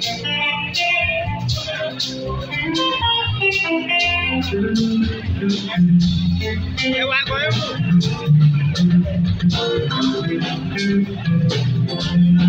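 Live juju band playing: electric guitar lines over drum kit and bass with a steady beat.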